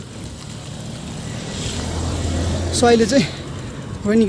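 A car driving past on a tarmac road, its engine rumble and tyre noise growing louder and peaking a little past halfway through.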